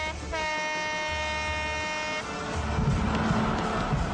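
A truck horn sounding one steady blast of about two seconds, followed by vehicle engine noise.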